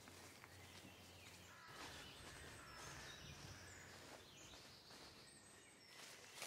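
Faint outdoor ambience of low steady background noise with a few short, scattered bird chirps.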